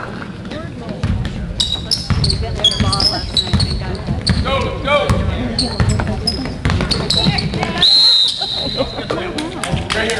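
Basketball sneakers squeaking on a hardwood gym floor and a basketball being dribbled, with a louder, longer squeal about eight seconds in.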